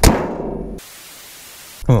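Toyota Camry hood slammed shut: one sharp metal bang with a ringing that dies away within about a second, a sound he points to as a flaw of the car.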